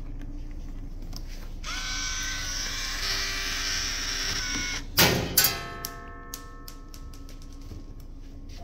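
A small electric motor whirring as it drives a toy tank-tread conveyor belt, starting about two seconds in and running for about three seconds. Then two loud knocks half a second apart, followed by a ringing tone that fades over about two seconds, with scattered small clicks.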